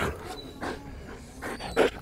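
A large dog breathing hard in short huffs while it clings to its handler during play, the loudest huff near the end.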